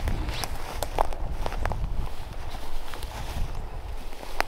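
Footsteps through dry leaves and brush: irregular sharp crunches and cracks, densest in the first two seconds, over a steady low rumble.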